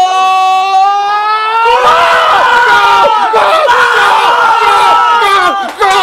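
One man's long drawn-out yell rising slightly in pitch, then about two seconds in several men screaming and cheering together over one another, celebrating a goal.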